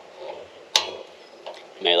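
A single sharp click about three-quarters of a second in, then a man starts talking near the end.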